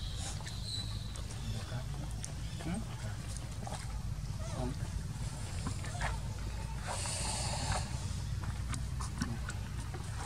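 Outdoor ambience: a steady low rumble with faint voices and scattered small clicks, and a brief rustling noise about seven seconds in.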